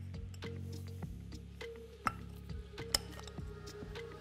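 Quiet background music with a few light metallic clicks, the sharpest about two and three seconds in, as a piston, its pin and small-end bearing are handled and slid onto the connecting rod of a Vespa engine.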